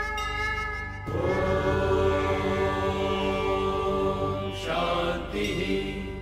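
Devotional background music: a steady held instrumental tone, joined about a second in by chanting of a Sanskrit peace (shanti) mantra.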